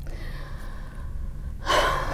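A woman's short, sharp intake of breath, a gasp, near the end, over low room hum.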